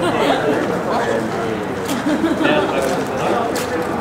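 Several people talking at the same time, overlapping chatter of voices, with a couple of brief sharp clicks.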